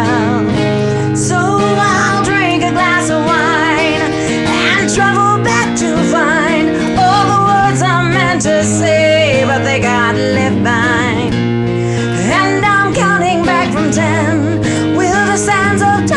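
Live music: a guitar being played through a slow song, with a sustained, wavering melody line, most likely the woman's wordless singing, above it.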